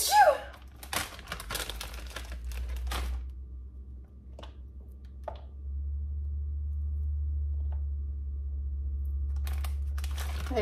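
Crinkling and crackling of a plastic packet of hard salami being opened and slices pulled out, dense for a couple of seconds and then a few light clicks. A steady low hum comes in about halfway through.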